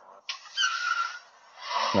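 A rushing, hiss-like noise lasting about a second, then a rising pitched sound near the end.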